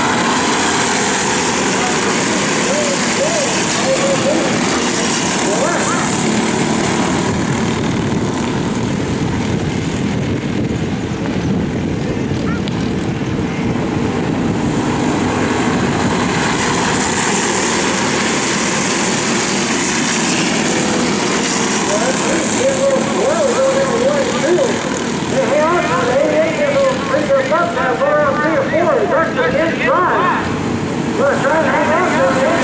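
A pack of racing karts running on track, their small engines revving in several overlapping pitches that rise and fall as they pass, busiest near the end.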